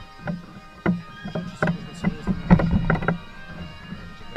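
Irregular knocks and bumps from a processional statue's wooden carrying poles jolting as the bearers walk, thickest in the middle. Faint music with held, drone-like notes runs underneath.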